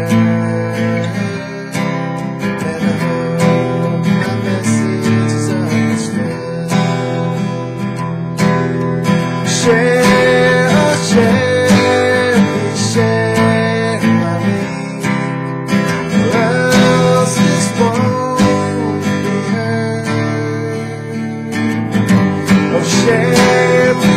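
Acoustic guitar strummed steadily in a folk-rock song, with a man's singing voice coming in over it in several phrases.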